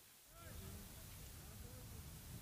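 Faint outdoor ground ambience: a low rumble with faint, distant voices calling, starting about half a second in.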